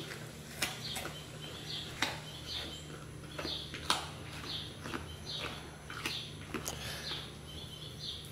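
A small bird chirping over and over, about twice a second, with a few sharp clicks scattered through and a faint steady low hum underneath.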